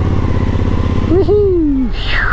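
Suzuki V-Strom motorcycle engine running at low revs as the bike is ridden slowly, a steady low rumble. Near the end a short drawn-out voice sound falls in pitch.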